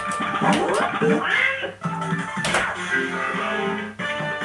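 Golden Dragon fruit machine playing its electronic sound effects as a button is pressed and the trail lights step: rising swooping tones in the first second and a half, a downward swoop about halfway through, then a run of steady beeping notes.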